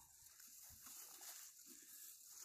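Near silence: faint outdoor background between spoken remarks.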